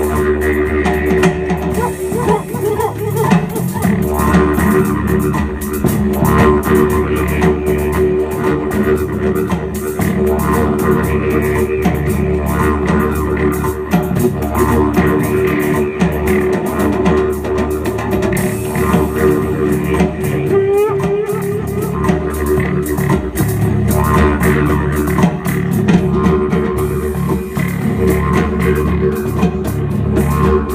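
Live band music: drum kit and electric bass guitar playing a groove over a low, steady droning tone that holds without a break.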